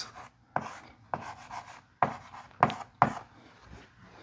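Chalk writing on a blackboard: about half a dozen short, sharp taps and scratches, each stroke separate.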